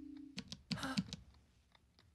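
A held low note dies away, followed by a few small dry clicks and a short scratchy burst of sound effects from the animation's soundtrack.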